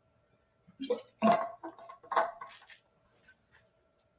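Water from a metal bottle being swished in the mouth and swallowed to rinse the palate between bourbon tastings, in three or four short gulps between about one and three seconds in.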